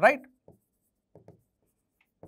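Faint, short strokes of a pen writing on an interactive display board: one about half a second in and a quick pair a little after a second, following a single spoken word at the start.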